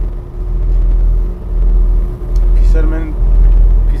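Tour boat's engine running with a steady low rumble and a constant hum, heard from inside the cabin.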